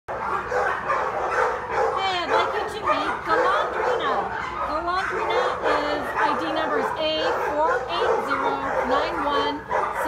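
Several dogs barking, yelping and whining at once, their calls overlapping without a break.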